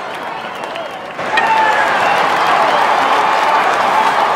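A bat hitting a pitched baseball about a second in, sharp and short. Spectators then cheer, clap and shout, louder than before the hit.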